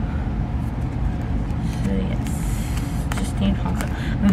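Steady low background rumble, with plastic binder sleeves and photocards rustling and clicking as they are handled in the second half.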